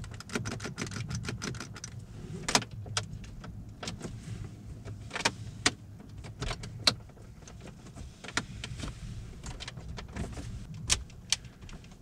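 Interior plastic trim of a Mercedes CLA 250 creaking and clicking irregularly over the low road hum while the car is driven: cabin rattles from the plastic panels.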